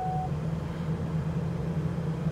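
Engine of a 1998 Ford StarTrans shuttle bus idling steadily just after a fresh start, heard inside the cab. A steady high warning tone stops shortly after the start of the sound.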